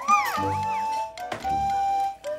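A baby gives a short, high squeal that rises and falls in pitch just after the start, over a simple melody playing throughout.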